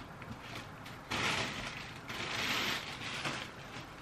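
Clear plastic bag rustling and crinkling as skeins of yarn are pulled out of it, in two spells, one about a second in and one around two and a half seconds.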